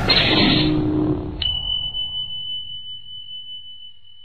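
Cinematic intro sound effects: a hit with a noisy wash that dies away over the first second and a half, then a sharp click sets off one high, steady ping that holds and slowly fades.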